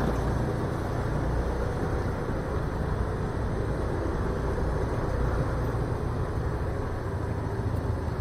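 Steady engine and road noise from a motor scooter riding slowly in stop-and-go traffic.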